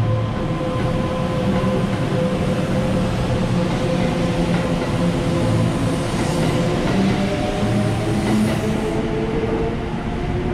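Kintetsu limited express train running out along the station platform. Its cars rumble and clatter by over a steady electric motor whine, which changes in the second half to several tones rising slightly in pitch as the train gathers speed.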